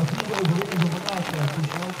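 A low voice talking indistinctly, over a patter of small clicks.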